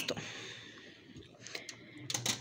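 Pot of beans boiling on a gas stove: faint bubbling, with a few light clicks about one and a half seconds in.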